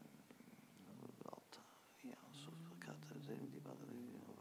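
Very quiet room with a man's voice faintly murmuring, rising into a soft, low held hum about two seconds in that lasts over a second.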